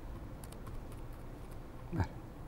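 Computer keyboard keys clicking faintly, a few scattered keystrokes as text is typed. A brief louder knock comes at the very end.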